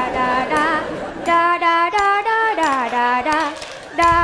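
A woman singing a tune unaccompanied on one repeated nonsense syllable, "đa đa đa", in quick short notes with a few held and sliding ones.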